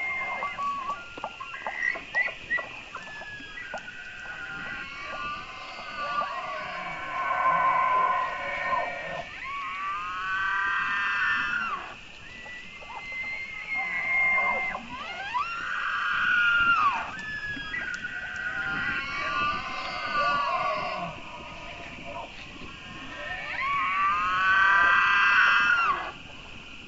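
Bull elk bugling: several long, high calls that rise and then fall, over a steady high hiss.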